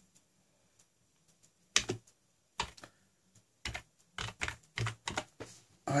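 Typing on a computer keyboard: a run of separate, unevenly spaced keystrokes starting a little under two seconds in, after a quiet opening, as a short word is typed into a search box.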